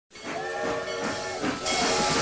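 Steam locomotive venting steam: a hiss that turns much louder about one and a half seconds in.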